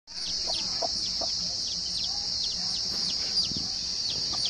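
Chicks peeping over and over in short, high notes that fall in pitch, several a second, with a hen's low clucks among them. Behind them runs a steady high-pitched hiss.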